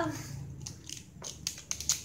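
Small clicks and knocks of plastic and metal Beyblade parts handled in the hands, a handful of separate clicks mostly in the second half.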